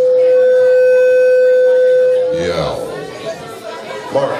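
Electric guitar amplifier feedback: one loud, steady whining tone held at the end of a song, cutting off a little over two seconds in. Voices and crowd chatter follow.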